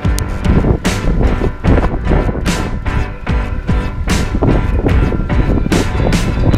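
Background music with a steady beat, drum strikes a little under once a second.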